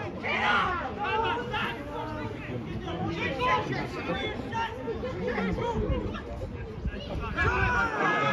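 Several overlapping voices calling out and chattering around a football match in play, with no single clear speaker.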